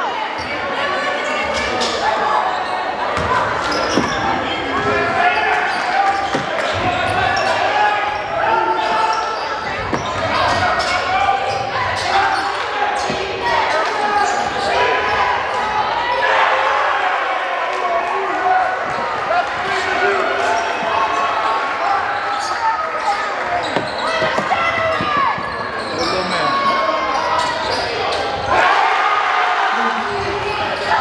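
Live game sound of a basketball game in a gymnasium: a ball bouncing on the hardwood court among many overlapping indistinct voices of players and spectators, echoing in the large hall.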